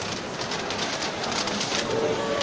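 Steady background din of a busy exhibition hall, with faint irregular clicks and knocks.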